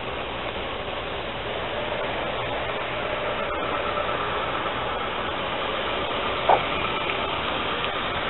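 Steady outdoor street noise, like traffic going by, swelling slightly after a couple of seconds, with one short blip about six and a half seconds in.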